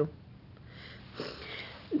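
A woman drawing an audible breath in through the nose, a soft rush lasting a little over a second, with a word of speech starting right at the end.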